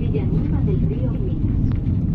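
Interior running noise of a moving Renfe Media Distancia train heard from inside the passenger carriage: a steady low rumble, with faint voices over it.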